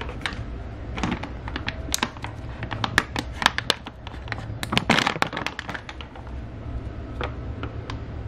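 A paper bag and foil-lined pouch of raw pet food rustling and crinkling in the hands as the pouch is opened, with irregular sharp crackles coming in clusters.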